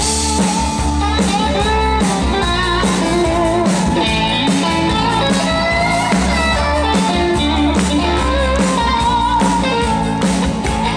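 Live rock band playing: a lead electric guitar solo on a Stratocaster-style guitar, with bent notes, over steady drum kit and bass guitar.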